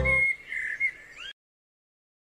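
The backing music of a children's song ends, followed by a few faint, short, high bird-like chirps that waver in pitch, then the sound cuts off to silence just over a second in.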